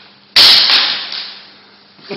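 A sword blow landing with a single loud, sharp crack about a third of a second in, fading away over about a second.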